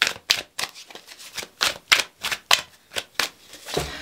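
A deck of tarot cards being shuffled by hand: a run of quick, irregular card slaps and riffles, several a second.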